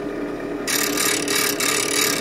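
Delta bench grinder's motor humming steadily; about two-thirds of a second in, the steel bevel of a chisel meets the spinning wheel and a loud grinding hiss sets in and carries on, grinding a lower 17-degree primary bevel.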